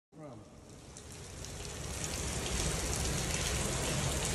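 Water from a burst pipe pouring down and splashing onto a flooded floor: a dense, steady patter and rush that grows louder. A brief voice sounds at the very start.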